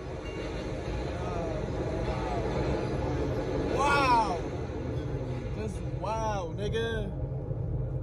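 A man's excited wordless shouts: one loud rising-and-falling shout about halfway through and a few short calls near the end. Under them runs a steady low rumble inside a car.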